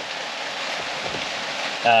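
Steady rain, heard as an even hiss with no distinct hits or tones.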